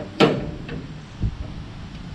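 Steel rear door of a Big Tex dump trailer being unlatched and swung open: a sharp clank just after the start, then a duller thump a little past a second in.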